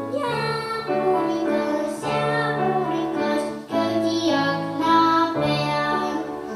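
A young girl singing a children's song into a microphone in long held phrases, over a recorded instrumental backing track with steady bass notes.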